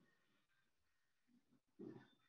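Near silence: faint room tone over an online meeting, with one brief faint low sound just before the end.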